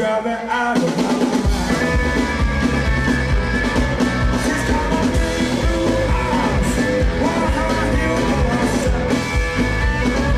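Live blues-rock band playing: electric guitar, bass, keyboards and drum kit behind a male lead vocal. The low end drops out briefly at the start, and the full band comes back in about a second and a half in.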